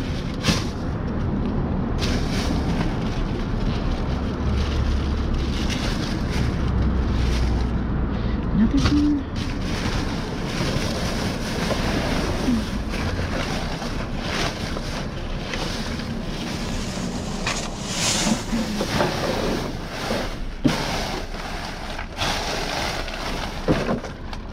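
Plastic trash bags and plastic wrapping rustling and crinkling as they are pulled around and handled close to the microphone, with wind buffeting the microphone, heaviest about four to nine seconds in.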